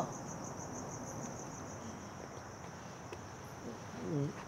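Crickets chirping steadily in the night: a high, evenly pulsing trill.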